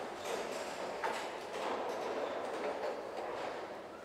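Low, even room noise in a church with a few faint clicks and rustles as metal altar vessels are handled on the altar.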